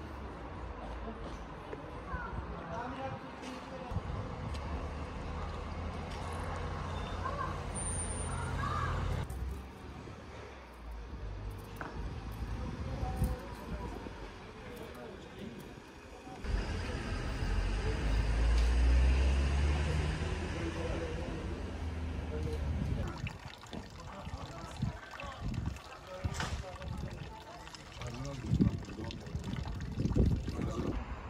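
A vehicle engine running in two spells of several seconds, one starting about four seconds in and a louder one about halfway through, under indistinct voices.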